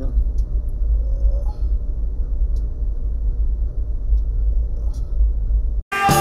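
Steady low rumble inside a car's cabin, with a few faint clicks; it cuts off suddenly just before the end.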